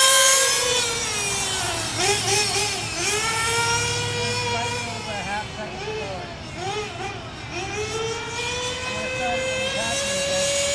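Small single-cylinder two-stroke glow engine of a 1/8-scale nitro RC car running high as the car drives. Through the middle the throttle is blipped on and off in a string of quick rising and falling whines, then held high and steady again near the end.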